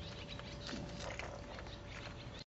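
A cat eating dry kibble, with a quick, irregular run of short crunching clicks as it chews.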